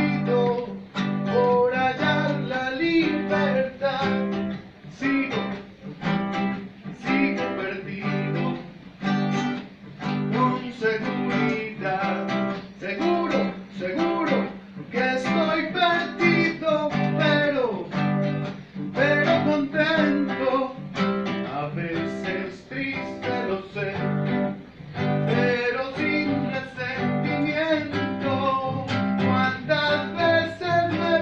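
Classical acoustic guitar strummed in a steady rhythmic pattern, playing the accompaniment to a song.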